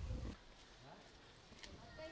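The last syllable of a woman's speech ends right at the start. After it comes faint outdoor background sound with a few soft, brief, scattered sounds.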